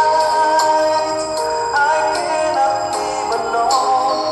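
A man singing a slow song over a karaoke backing track, holding long, steady notes.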